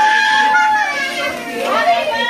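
Several children's voices calling out around the cake, one drawn out into a long, high held note, with bending, sliding voices near the end.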